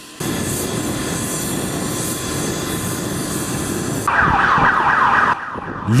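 A steady rumble and hiss, then about four seconds in a motorcade escort siren starts, louder, in rapid repeating sweeps of pitch, and breaks off about a second later.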